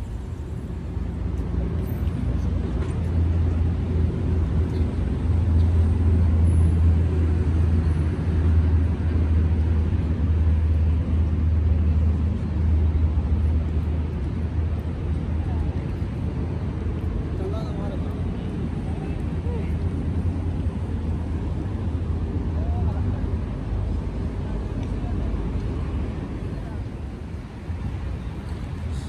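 Low, steady rumble of road traffic, loudest in the first half, with faint voices.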